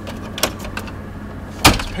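Clicks and knocks from the centre console compartment of a 2000 Ford Expedition being opened and handled: a sharp click about half a second in, a few light ticks, then a louder knock near the end. Under it is the steady hum of the idling 4.6L V8.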